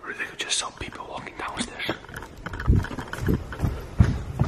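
Hushed, whispered talking, with several low thumps in the second half.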